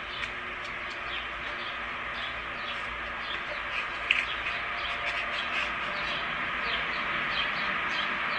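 Many small birds chirping, short scattered calls over a steady outdoor background hiss.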